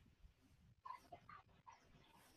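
Near silence, with a few faint, short sounds about a second in.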